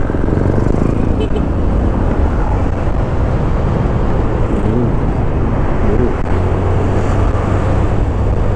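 Steady wind rush and the running of a carbureted Honda Beat scooter's small single-cylinder engine, heard on the move from a camera worn on the rider's helmet, with road traffic around.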